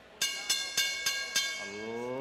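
A bell struck five times in quick succession, about three strikes a second, its ringing tones carrying over each other.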